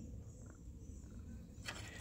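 Quiet outdoor background: a faint, steady low rumble, with one light click about halfway through.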